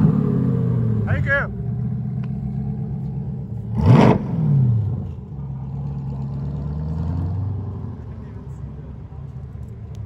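C8 Chevrolet Corvette's V8 with a Borla aftermarket exhaust, revved in short blips as the car rolls away. A sharp rev about four seconds in is the loudest moment. Then it settles to a low, steady note that fades as the car moves off.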